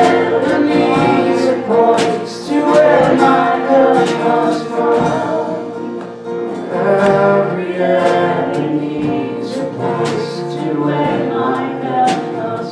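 Live worship song: several voices singing together over a strummed acoustic guitar.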